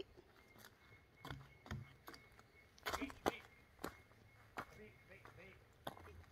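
Quiet, with scattered soft clicks and knocks of handling and movement, and a brief faint voice about three seconds in.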